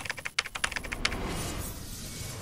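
Computer keyboard typing sound effect: a quick run of about a dozen keystroke clicks that stops just after a second in.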